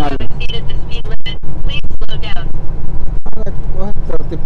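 Steady low rumble of a semi-truck's engine and road noise heard inside the cab while driving, with brief snatches of voice.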